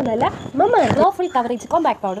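A woman's voice speaking.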